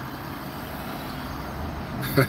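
Steady low rumble of a car heard from inside its cabin, running evenly with no sudden changes.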